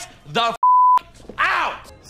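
Censor bleep: a single steady high beep, about half a second long, blanking out a swear word between shouted words.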